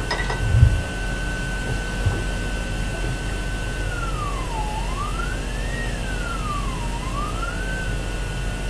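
A steady high whine from a coil-and-capacitor transmission-line network driven by an audio oscillator and power amplifier. About halfway through, the pitch sweeps down, up, down and back up as the oscillator is tuned to find the line's resonance. A low hum runs underneath, with a low bump near the start.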